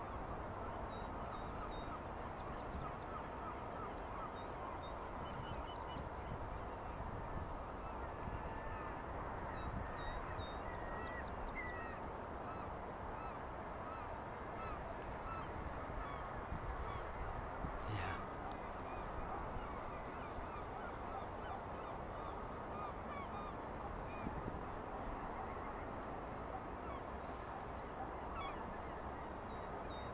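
Faint distant bird calls over a steady outdoor background hiss, with a short run of chirps about ten seconds in. A single sharp click about halfway through.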